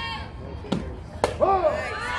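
Two sharp smacks about half a second apart as a softball pitch arrives at the plate, the ball meeting the catcher's mitt or the bat. Loud voices yelling follow straight after.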